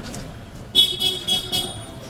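A vehicle horn sounds once with a high, steady tone, starting just under a second in and lasting about a second.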